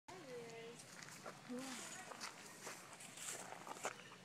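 Faint human voices talking, with scattered light clicks and rustles.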